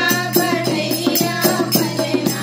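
Dholak, a two-headed rope-tensioned barrel drum, played by hand in a quick, steady beat of about four to five strokes a second. It accompanies voices singing a sohar folk song.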